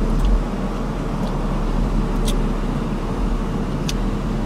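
Car engine idling, heard from inside the cabin as a steady low rumble, with a few faint clicks over it.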